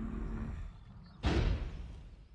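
A single heavy footstep of a giant iron robot, a deep booming thud a little over a second in, over a low steady hum. It is a film sound effect.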